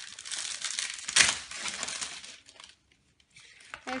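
Plastic packaging crinkling and paintbrushes clattering as a brush is picked out of a pack, with one sharp clack about a second in. It goes quiet after a couple of seconds, then a few light clicks follow near the end.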